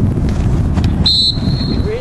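Referee's whistle blown once about a second in, a sharp high blast that drops to a fainter held note, stopping play for a free kick. Wind rumbles on the microphone throughout.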